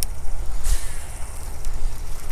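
Wind rumbling on the microphone, steady and low, with a short burst of hiss about two thirds of a second in.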